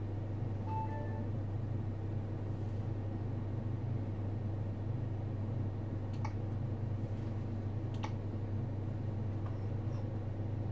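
Steady low electrical hum from equipment, with a brief faint beep about a second in and a few faint clicks later on.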